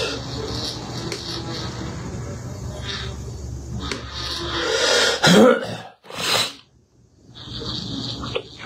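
A man coughing about five seconds in, over a steady low room hum. Just after, the sound cuts out for about a second.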